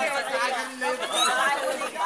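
Indistinct chatter of several people's voices talking over one another, with no clear words.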